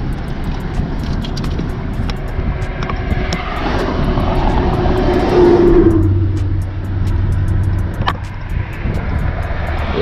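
Highway traffic heard through an open vehicle window: a steady rumble of passing vehicles, with one loud vehicle swelling past about four to six seconds in.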